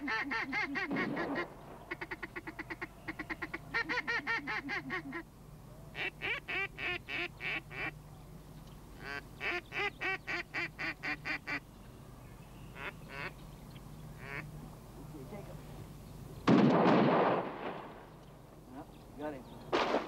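Hunter's duck call blown in runs of rapid quacks, imitating ducks to lure them in, with short pauses between the runs over the first dozen seconds. About three-quarters of the way through comes a single sudden loud rushing burst lasting about a second.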